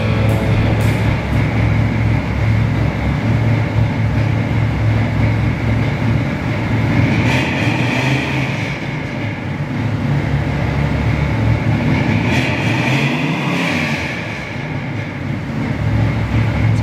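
1964 Lincoln Continental's 430 V8 running at idle, a steady low rumble that swells twice, about seven seconds in and again around twelve seconds in.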